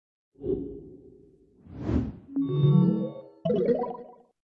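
Quiz game sound effects from the Quizizz app: a low thud about half a second in, a rising whoosh near two seconds, then a short musical chime jingle as the leaderboard comes up.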